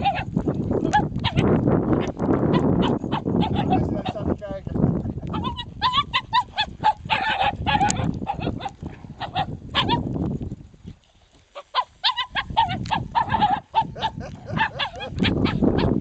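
Several Markiesje dogs barking rapidly in quick yaps, in two stretches a few seconds apart, over heavy wind rumble on the microphone.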